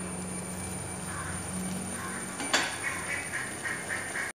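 A steady low hum with one sharp metallic clink about two and a half seconds in, as a steel cooking-pot lid is lifted off and set down on the stove.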